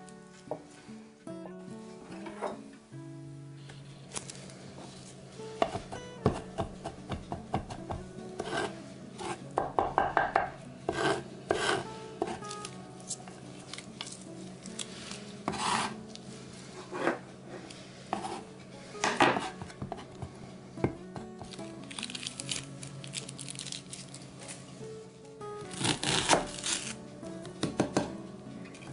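Chef's knife chopping garlic and onion on a wooden cutting board: runs of quick taps, densest about ten seconds in and again just before the end, over soft background music.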